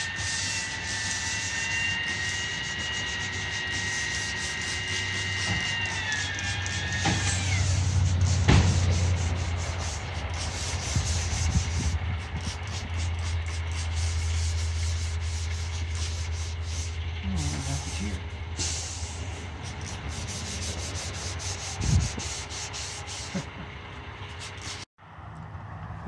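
Hand rubbing of a garden tractor's painted sheet-metal hood with a pad, a fast, steady scrubbing of short strokes. Under it runs a steady low hum, and in the first few seconds a high whine falls in pitch and fades.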